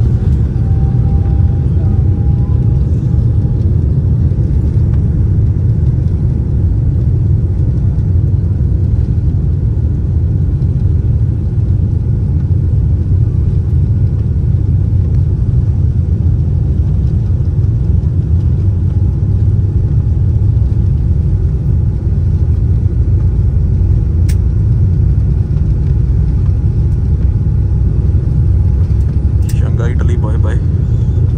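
Jet airliner's engines and rolling wheels heard from the cabin over the wing: a loud, steady rumble as the plane rolls down the runway for takeoff. A faint rising whine sounds in the first few seconds.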